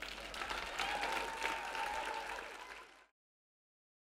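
Audience applauding at the end of a talk, a dense patter of many hands clapping, which cuts off suddenly about three seconds in.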